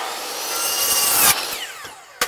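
A DeWALT miter saw cutting through a pressure-treated deck board, a loud sawing noise for about a second and a half. The cut then ends and the blade winds down with a falling whine.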